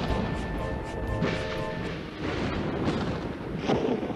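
Thunder from a lightning strike, crashing and rumbling in several swells over a steady storm noise, with music underneath.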